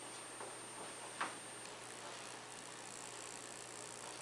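Faint clicks and taps from hands working the keyboard and controls at a music desk over steady room hiss, with one sharper click about a second in. A faint high-pitched whine stops about one and a half seconds in.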